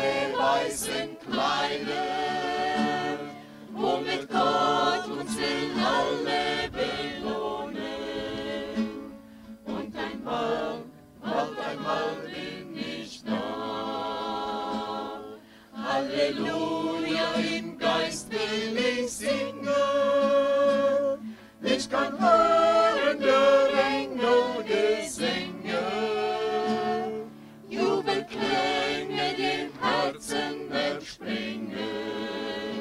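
A small mixed choir sings a hymn to an acoustic guitar, in sung phrases with a short break every five or six seconds.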